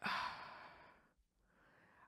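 A person sighing out into a close microphone, the breath fading away over about a second, then a short, fainter breath in before speaking.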